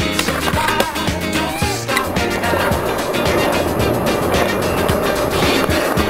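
Skateboard on concrete: wheels rolling with a rough scraping noise from about two seconds in, under backing music with a steady beat.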